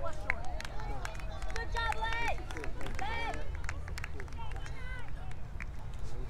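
Outdoor youth soccer game: raised calls and shouts from players and spectators, with a string of short knocks and footfalls of players running on the field over a steady low rumble.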